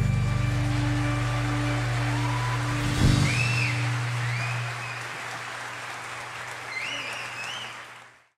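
A live orchestra's final chord rings and dies away, with a last sharp hit about three seconds in, as audience applause swells. Whistles from the crowd come through the applause, and the sound fades out near the end.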